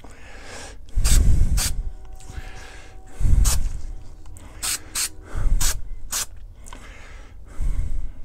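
Aerosol can of Rust-Oleum Multicolor Textured spray paint given light, short sprays: several separate puffs of hiss a second or two apart.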